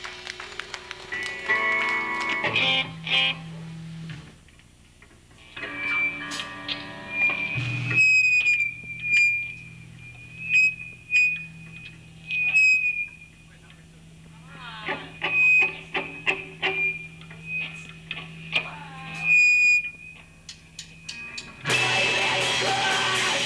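Live electric guitar through an amplifier between songs: a few picked notes and chords early on, then a thin high feedback whine that wavers and comes and goes over a steady amp hum. The full rock band crashes in right at the end.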